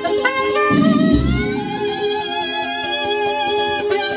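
Alto saxophone playing a melody, with a note sliding upward about a second in, over a recorded pop backing track with heavy bass beats.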